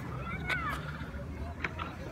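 Faint outdoor street ambience, a steady low rumble, with a few short high chirps in the first second and a couple of faint clicks.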